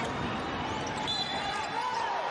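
A basketball being dribbled on a hardwood court during a drive to the basket, over a steady hum of arena crowd noise. A few thin high squeaks come in the second half.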